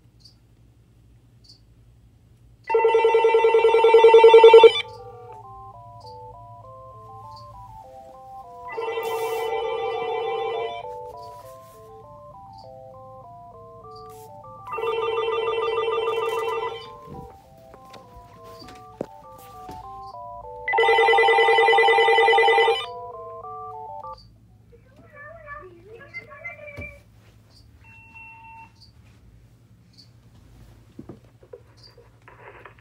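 Several Uniden cordless phones ringing at once for an incoming call. A loud warbling electronic ring comes in four bursts of about two seconds, roughly six seconds apart, while a handset plays a stepping melody ringtone between the bursts. The ringing stops about three-quarters of the way through.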